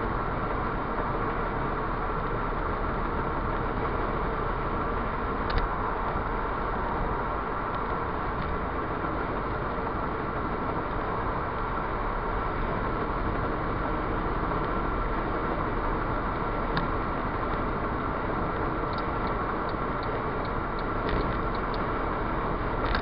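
Steady road and engine noise inside a Ford Fiesta Mk6 cruising at motorway speed, with a few light clicks, several of them close together near the end.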